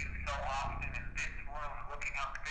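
A thin, telephone-like voice coming from a handheld device's small speaker. It is consistent with a ghost hunter's recorder playing back an EVP session while he listens for a spirit voice.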